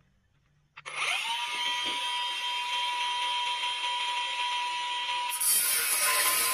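Cordless angle grinder switched on about a second in, spinning up and running free with a steady high whine. Near the end the disc bites into the steel C-purlin and a louder, harsher cutting noise takes over.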